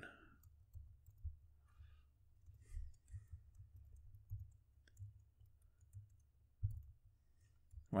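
Faint clicks of computer keyboard keys being typed at irregular intervals, over a low steady hum.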